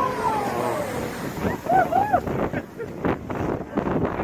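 Geyser eruption: a steady rush of steam and falling water mixed with wind on the microphone. A long whoop trails off at the start and two short whoops come about halfway through.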